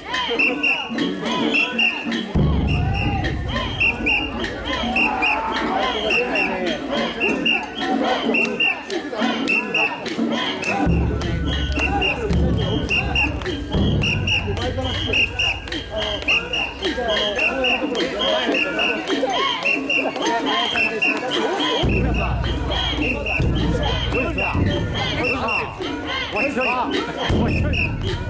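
Festival crowd carrying a mikoshi, with many voices chanting in a steady rhythm and short bright clinks in time with it, about two or three a second. Heavy low rumbling comes and goes in long stretches.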